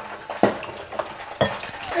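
Diced raw potatoes being tipped from a plastic bowl into a plastic colander in a steel sink: a few short knocks and clatters over a faint hiss of draining water.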